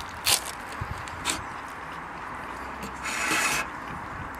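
Cutlery on plastic plates during a meal: a sharp clink, a second lighter one a second later, and a short scraping sound about three seconds in.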